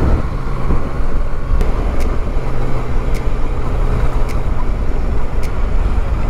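Yamaha Tracer 900 GT motorcycle's inline-three engine running steadily as the bike rides along, heard from a camera on the bike with wind noise. A few faint high ticks come through now and then.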